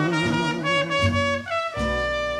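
Jazz band instrumental fill led by trumpet and brass between sung lines of a slow ballad. A held note with vibrato ends just after the start, then steady brass notes step through a short phrase over the band.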